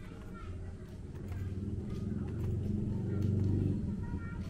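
A motor vehicle's engine running close by, growing louder over the first three seconds and dropping away just before the end, with faint voices in the background.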